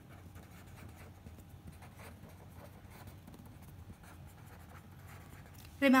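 Pen writing on paper: faint, irregular scratching of handwritten strokes over a low steady hum.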